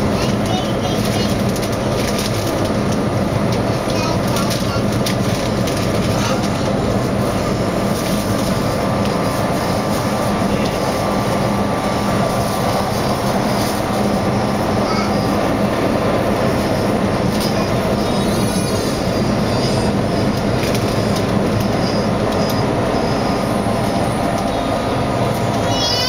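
Keihan limited express electric train running at speed, heard from inside the front car: a steady rumble of wheels on rail with a low motor hum and scattered clicks from the rail joints.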